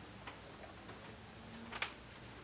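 Quiet room with two short clicks from a loose sheet of paper being handled, a soft one just after the start and a sharper one near the end.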